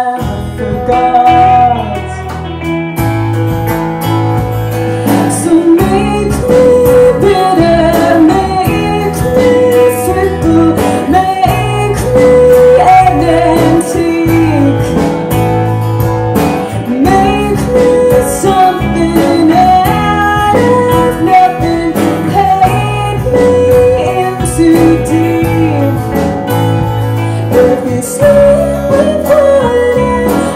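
Live band playing a song: a woman singing lead over her strummed acoustic guitar, with electric guitars and a drum kit. The full band comes in about three seconds in.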